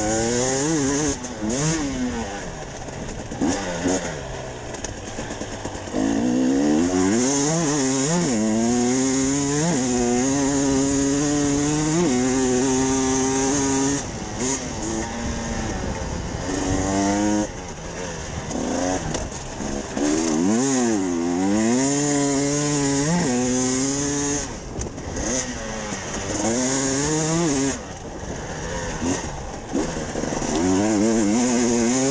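Hard-enduro motorcycle engine heard from on board, revving hard and falling off again and again as the bike is ridden fast over a dirt course. It briefly drops back off the throttle several times before picking up again.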